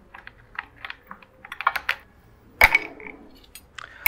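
Ice cubes taken by hand from a bowl and dropped into a glass mixing glass: a scatter of small clinks, with one louder clink about two and a half seconds in.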